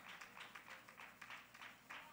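Near silence: faint room tone with soft, irregular taps a few times a second.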